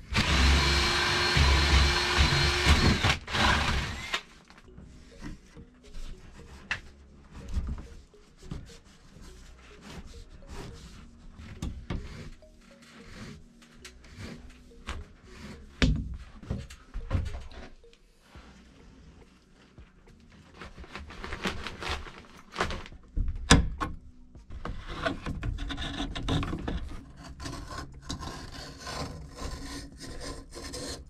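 A Ryobi cordless drill runs loud and steady for about four seconds, boring through a wooden ceiling joist, then stops. After that, yellow electrical cable is pulled through the drilled holes, rubbing and scraping against the wood with scattered knocks and clicks.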